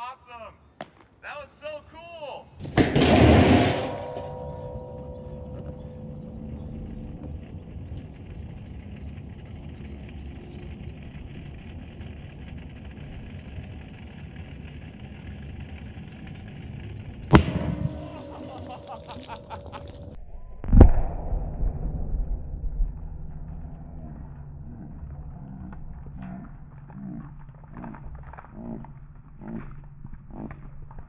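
Liquid nitrogen hitting warm water in a metal drum, with a loud rush of boiling and hissing that settles into a steady hiss. A sharp crack comes about halfway through, then a few seconds later a heavier boom with a low rumble as the gas pressure blows the play-place balls out, followed by scattered light knocks.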